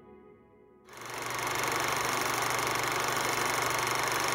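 The last notes of music die away, then about a second in a film projector's fast, steady clatter with a low hum starts abruptly and runs on loud and even: a sound effect laid under a vintage-film "The End" card.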